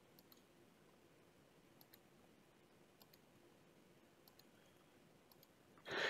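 Faint, scattered clicks of computer keys, several in quick pairs, as the spaces between words in a typed sentence are deleted one by one.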